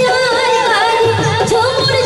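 Live Bhawaiya folk music: a wavering singing voice over a regular drum beat and held melodic accompaniment.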